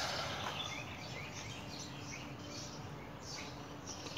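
Songbirds chirping in short, scattered calls over a steady outdoor background hiss.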